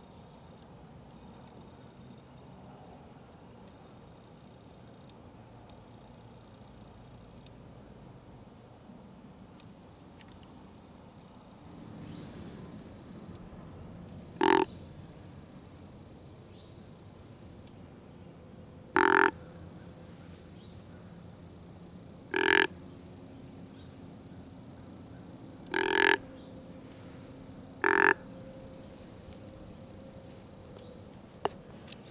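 Deer grunt call blown five times: short croaking grunts a few seconds apart, imitating a whitetail buck's grunt.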